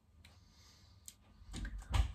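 Faint lip smacks and mouth clicks after a sip of beer, a few isolated ticks, then a breath in just before speaking.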